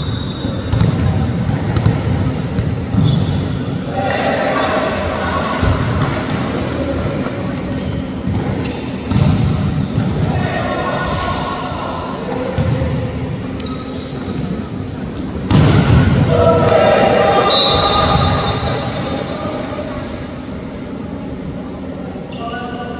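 Volleyball rally in a large echoing sports hall: the ball is struck and hit again and again with sharp thuds. Players shout calls at several points, loudest just past the middle of the stretch.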